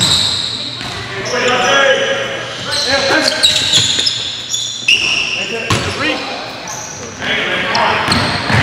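Sounds of a basketball game in a gym: short high squeaks of sneakers on the hardwood floor, the ball bouncing, and players' voices.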